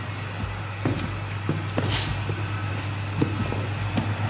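Crackle and rustle of vinyl decal film being handled and peeled from a quad's plastic fender, with scattered light clicks, over a steady low hum.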